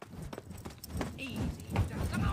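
Quick, irregular footfalls knocking on a hard courtyard: a cartoon character's running footsteps from an animated show's soundtrack.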